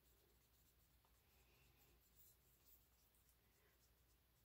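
Near silence, with faint scraping of a stick stirring thinned white house paint in a plastic cup.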